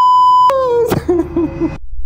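Censor bleep: a loud, steady 1 kHz beep held for about half a second, covering a swear word. A man's voice follows briefly and then cuts off suddenly.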